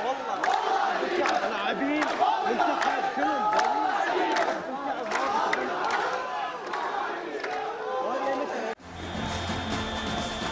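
A large crowd of football fans shouting and chanting together in celebration, many voices overlapping with sharp claps or beats among them. Near the end it cuts off abruptly into a short music sting.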